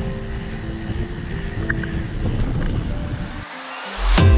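Low wind rumble on the microphone of a camera riding on a moving road bike, with quiet background music holding sustained chords underneath. The rumble cuts out about half a second before the end.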